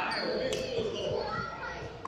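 A badminton racket hitting a shuttlecock once, a sharp crack about half a second in, echoing in a large sports hall over indistinct voices.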